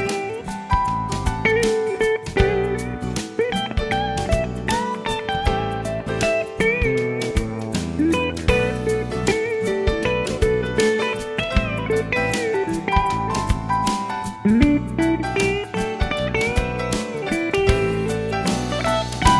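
Instrumental break in a song: a lead guitar solo with sliding, bending notes over bass and a steady drum beat.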